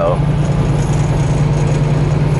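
Semi-truck's diesel engine running steadily at highway cruise, heard inside the cab as a constant low drone with road and wind noise.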